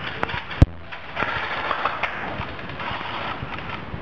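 Handheld camera being carried and moved: two sharp clicks in the first second, the second one loud, then rustling movement noise.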